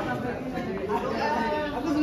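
Several people chattering and talking over one another in a room, with no other distinct sound.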